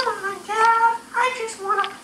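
A high, child-like voice calling in a drawn-out sing-song, "Come on, Dad… play," in about four held syllables.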